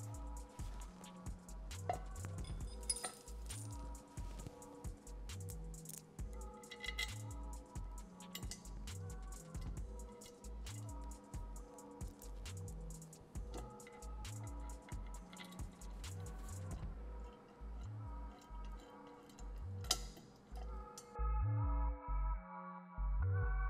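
Background music with a steady bass beat, over scattered light metallic clinks of bolts and a hex wrench being handled as a steel outrigger is fitted and bolted on.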